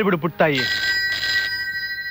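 Telephone bell ringing: one ring starts about half a second in, and its tones hang on after it.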